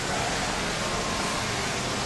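A steady rushing hiss of background noise with no distinct events; it drops off abruptly just after the end.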